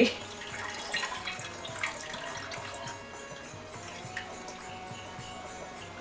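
Whey trickling and dripping from freshly cooked mozzarella curds through a mesh strainer into a bowl, with a few light clicks of the ladle. Soft background music plays underneath.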